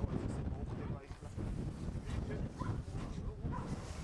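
A dog barking a few short times, over a low rumble of wind on the microphone.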